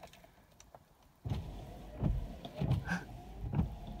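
Rover 216 Cabriolet's newly replaced windscreen wiper motor switched on about a second in and running, driving the blades across the screen with a faint motor whine and repeated low thumps.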